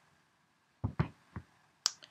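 Four short, sharp knocks and clicks in the second half, the last the sharpest, from objects being handled and moved about.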